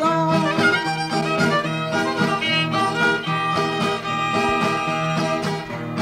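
Instrumental break of a regional Oaxacan corrido: a violin plays the melody over a rhythmic guitar accompaniment.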